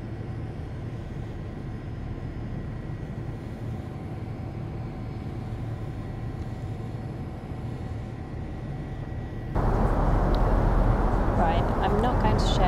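Steady low rumble of jet engines and rushing air inside an airliner cabin. About nine and a half seconds in it jumps abruptly louder, and a woman's voice starts near the end.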